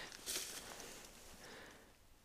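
Faint rustling and handling noise, with a brief scuffing rustle about a quarter second in.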